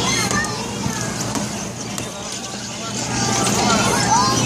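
Children's voices and chatter on a fairground kiddie ride, with a steady low hum underneath. The voices ease off in the middle and pick up again near the end.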